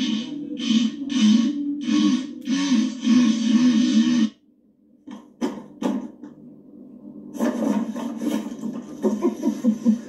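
Sound of meme clips played back: music with a regular beat for about four seconds cuts off suddenly, a couple of sharp clicks follow, and from about seven and a half seconds a busier, noisier clip begins.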